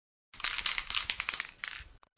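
A burst of dry crackling and crunching clicks, dense and irregular and mostly high-pitched. It starts just after a moment of silence and lasts about a second and a half.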